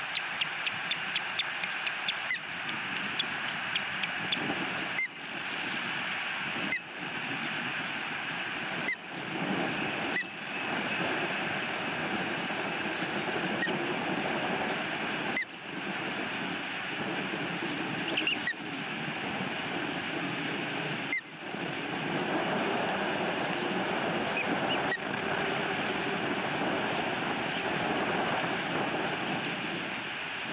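Steady outdoor rushing noise picked up by the osprey nest-cam microphone, with a quick run of short ticks at the start and a dozen or so scattered sharp clicks.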